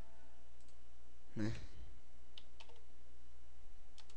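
A few faint computer mouse clicks, with a steady low hum underneath.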